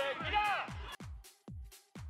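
Background electronic dance music with a steady kick-drum beat about four times a second and a voice over it in the first half; the music then almost drops out, leaving a single beat before it comes back at the end.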